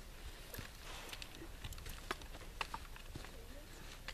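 Faint, scattered clicks and light knocks of rifle gear being handled.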